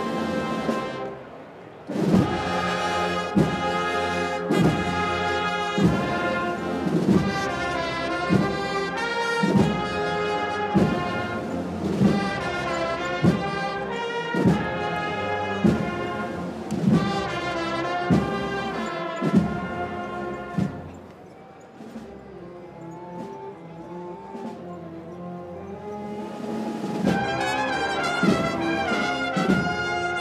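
Brass band playing a Holy Week processional march, with a steady beat about once a second. The music drops to a softer passage about two-thirds of the way through, then swells again near the end.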